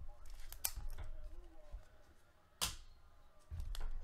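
Handling noises at a card-breaking table: a few short rustles and clicks in the first second, then a single sharp crackle like a foil pack wrapper being torn, about two and a half seconds in.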